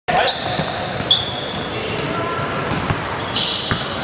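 Basketball game sounds on a hardwood gym floor: sneakers squeaking in short high chirps several times and a basketball bouncing, echoing in a large hall.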